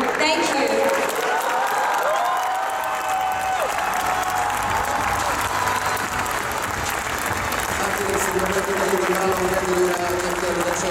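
Large arena crowd applauding steadily.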